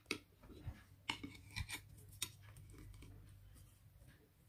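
A knife slicing through a soft steamed sponge cake, with faint clicks and scrapes as the blade meets the plate, several of them in the first two seconds or so.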